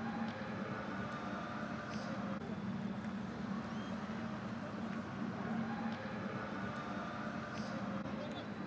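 Steady background ambience of a football match broadcast: a continuous low murmur and hum with no crowd roar and no commentary, and a few faint short high sounds.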